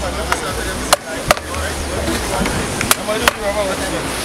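Wooden stick hammering the back of a knife blade to drive it through a mahi-mahi's head: five sharp knocks, the last four in two quick pairs.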